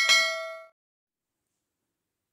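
Notification-bell chime sound effect from a subscribe-button animation: a single bright ding that rings out and fades within about the first second.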